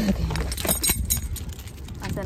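Light clinking and rattling, with crinkling of shopping bags being handled at a car's open rear hatch, over a low rumble of handling noise on the phone microphone.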